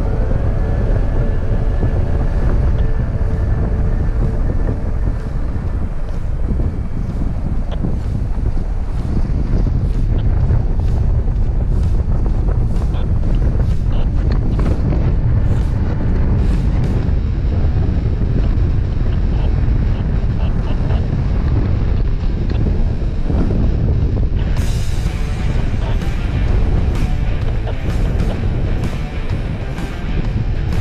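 Wind rushing over the camera microphone in paraglider flight, a steady low rumble, under background music.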